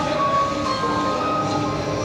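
Music: a slow melody of long held notes that change pitch every half second or so, over a steady, full backing.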